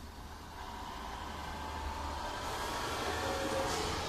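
Temsa HD motorcoach running, its engine and road noise growing steadily louder.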